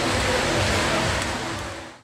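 Steady street traffic noise, an even rushing hiss, fading out near the end.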